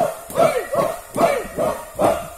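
A group of men giving short, rhythmic shouted war-chant calls in unison, about two and a half a second, each call dropping in pitch.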